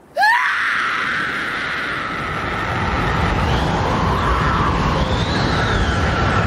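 A long, harsh scream over a heavy low rumble. It starts suddenly with a sharp upward sweep in pitch and holds for several seconds, with the pitch wavering and rising again near the end.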